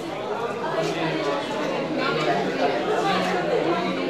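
Chatter of several people talking at once, their voices overlapping.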